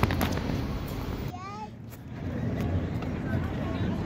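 Steady low background rumble of street and walking ambience, with a short snatch of a voice about a second and a half in.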